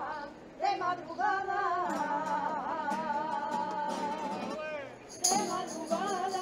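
Sevillanas rocieras being sung: a long, wavering melismatic vocal line over a steady low accompaniment. About five seconds in, quick jingling tambourine strokes come in.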